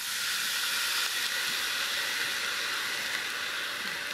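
Vinegar poured into a hot Dutch oven of sautéing garlic, chilies, bay leaves and scallions, giving a steady hiss and sizzle of liquid flashing to steam that comes up as the vinegar hits the pan.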